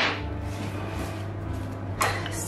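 A single sharp knock at the very start, then a low, steady hum.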